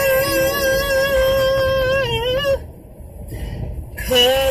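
A man singing one long, high, wavering held note that breaks off about two and a half seconds in. Under it and after it there is a low, steady rumble of road noise inside the moving car.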